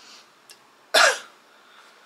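A man's single short cough, about a second in.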